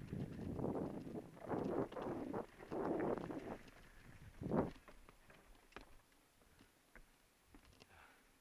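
Mountain bike ridden over a rough rock and dirt trail, picked up by a camera mounted on the bike or rider: a jumble of rattles and bumps from the tyres and frame, with one loud jolt about four and a half seconds in. After that the bike slows to a stop and only a few faint clicks remain.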